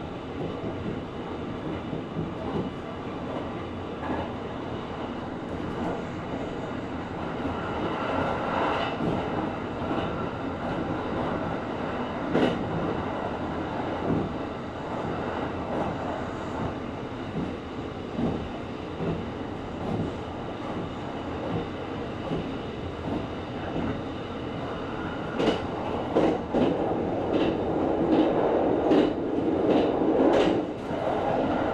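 Kintetsu 23000 series Ise-Shima Liner electric express running along the line, heard from inside the front passenger cabin: a steady rumble of wheels on rail with sharp clacks over rail joints, coming more often near the end.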